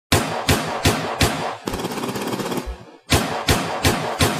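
Gunshot sound effects: four single shots about a third of a second apart, then a rapid burst of automatic fire lasting about a second. After a short gap, three more single shots follow at the same pace near the end.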